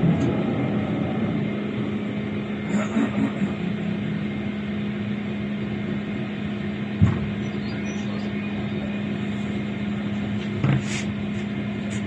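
Tram riding along, heard from inside the car: a steady running rumble with a constant low hum. There is a single sharp knock about seven seconds in, and a brief clatter near the end.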